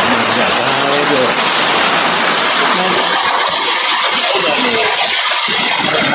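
A man's voice speaking in a recorded sermon, over a loud, steady hiss.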